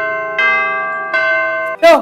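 School bell chime: bell notes struck one after another, about one every three-quarters of a second, each ringing on as the next begins. It signals the end of the school day.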